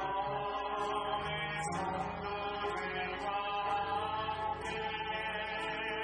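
A small worship team, a man and two women, singing a slow Korean worship song over acoustic guitar, with long held notes.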